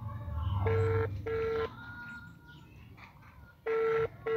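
Telephone ringback tone from a smartphone's loudspeaker: a double ring, two short tones close together, heard twice about three seconds apart. It is the sign that the outgoing call is ringing and has not yet been answered.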